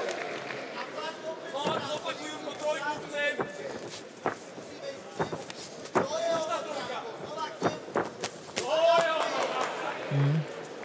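Shouting voices in the boxing arena with the sharp smacks of gloved punches landing, several quick impacts scattered through.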